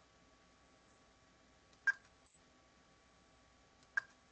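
Two sharp computer-mouse button clicks, about two seconds apart, each with a short ring. They are clicks placing curve points while tracing a shape in embroidery digitizing software.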